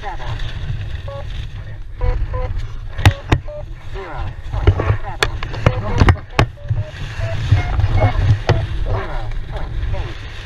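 Wind rushing over a helmet camera's microphone during a parachute descent, with a number of sharp cracks, the loudest about three and six seconds in.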